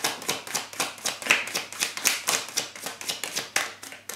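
A deck of tarot cards being shuffled in the hands: a quick, even run of papery slaps and clicks, about five or six a second.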